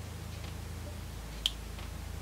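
A single sharp click of small flush cutters snipping at the insulation of a Lightning cable, about a second and a half in, over a low steady hum.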